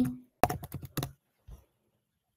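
Typing on a computer keyboard: a quick run of about half a dozen keystrokes as a search word is typed, then one last faint tap.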